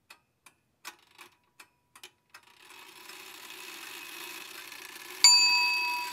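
Animated end-card sound effects: light ticking at about three ticks a second, then a rising hiss that builds for a few seconds. About five seconds in, a sudden loud bell-like ding sounds and rings on.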